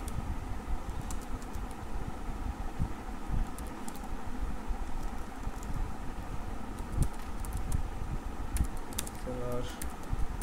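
Computer keyboard typing: scattered keystrokes, coming thicker in the last few seconds, over a steady background hum.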